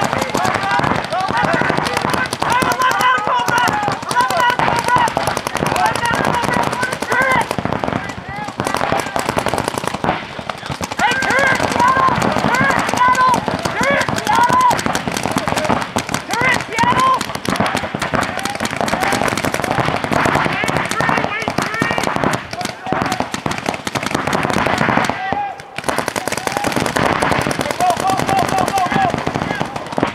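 Paintball markers firing in rapid strings from several players at once, a dense run of quick pops. People shout and call over the firing.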